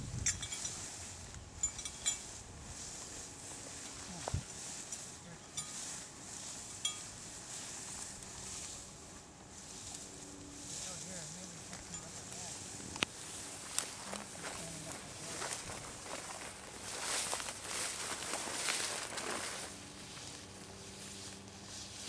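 Footsteps swishing through tall grass, with a few sharp clicks and knocks scattered through. The rustling grows louder in the second half.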